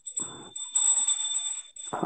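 A thin, steady high-pitched electronic whine with a second tone above it, over about a second and a half of rustling noise from a handheld earphone microphone.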